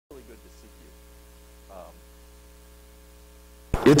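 Steady electrical mains hum, with a faint murmur of voices in the first second. A man's voice starts speaking loudly just before the end.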